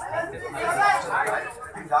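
Speech only: people talking, with several voices overlapping as chatter.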